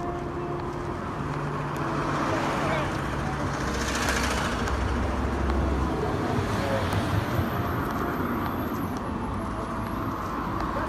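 Road traffic: cars driving past on a busy street, with one vehicle passing close and loudest around the middle.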